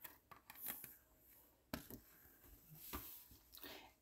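Near silence: room tone with a few faint, brief rustles, about a second, just under two seconds and three seconds in.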